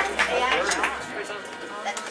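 Indistinct voices talking in a room, getting quieter. A low steady hum stops about a second in.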